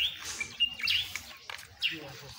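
Birds chirping: a few short, high chirps and whistles, with a quick falling note near the end.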